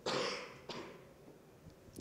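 A man coughing twice: a strong cough at the start and a smaller one under a second later.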